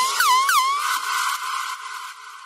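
The outro of an electronic dance music track in a DJ mix, with no beat. A repeated swooping synth effect, a quick fall and rise in pitch several times a second, stops just under a second in. A hissy noise wash then fades steadily away.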